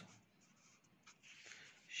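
Felt-tip marker writing on paper: faint scratching strokes.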